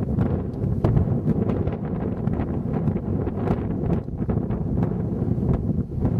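Wind buffeting the camera's microphone, a steady low rumble that swells and dips irregularly, with scattered faint clicks.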